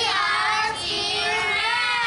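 A group of children singing out together at once, several voices holding long, wavering notes.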